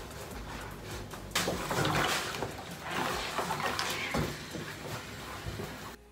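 Cotton shirt fabric rustling and rubbing as it is pulled and smoothed across an ironing board and pressed with an iron, with a few handling knocks.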